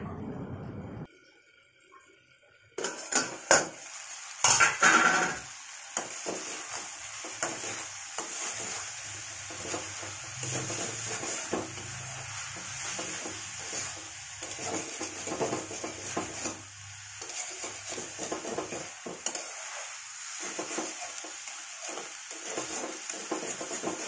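A steel plate lid clanks loudly twice against an aluminium kadhai a few seconds in, then a spatula scrapes and stirs radish pieces and radish leaves in the pan over a steady sizzle.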